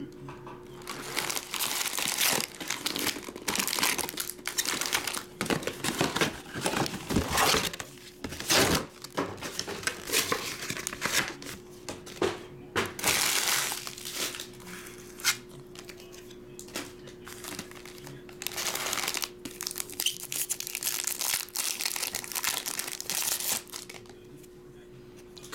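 Foil trading-card pack wrappers crinkling and rustling as the packs are pulled from their cardboard box and stacked, in a steady run of irregular crackles.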